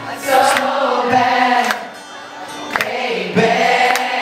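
Live acoustic pop ballad: a male voice singing over a strummed acoustic guitar, with many voices from the audience singing along. The singing drops briefly around the middle and comes back.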